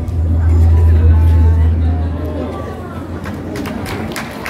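A deep bass drone from a light show's soundtrack fades away over the first two and a half seconds, leaving the voices of a chattering crowd. A few scattered claps start near the end.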